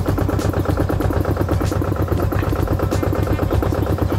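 Tractor engine running steadily to supply air to a pneumatic olive harvester, with a fast, even mechanical clatter over it.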